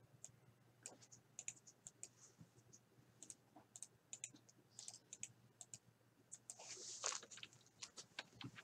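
Faint, irregular clicking of a computer keyboard and mouse, with a brief louder burst of noise about seven seconds in.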